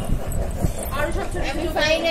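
Snatches of people talking at a table, over a steady low rumble of handling noise from the moving handheld camera.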